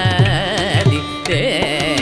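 Carnatic concert music: a male vocalist sings a heavily ornamented, wavering melodic line with violin accompaniment. A mridangam keeps up a steady pattern of strokes under it, several a second, with bass strokes that slide down in pitch.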